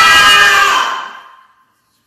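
A woman's loud, drawn-out scream that fades away and ends about a second and a half in.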